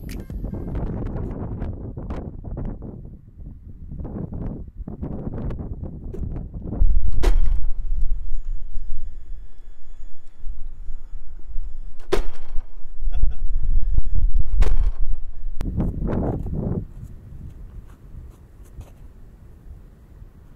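Electric RC scale crawler truck climbing wooden stairs, with a few sharp knocks as it strikes the steps over a heavy low rumble. The sound grows louder about seven seconds in and eases off near the end.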